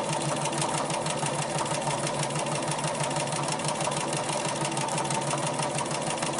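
Bernina 440 domestic sewing machine running steadily at speed, its needle stitching in a rapid, even patter while the fabric is moved freehand to stitch free-motion quilting loops.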